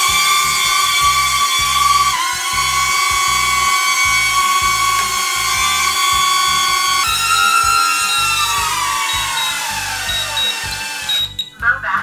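The DJI Neo's small motors and propellers whining, running with both propeller guards and rings fitted. The whine rises in pitch as the motors spin up at the start, holds steady, then slides down in pitch near the end and stops.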